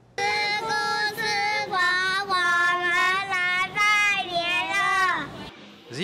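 A child's voice singing a slow melody of long held notes, starting suddenly and fading out about a second before the end.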